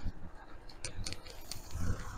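Irregular low rumble of wind buffeting the microphone on a moving bicycle, with a few faint clicks in the middle. Near the end the rumble rises as a van drives past close by.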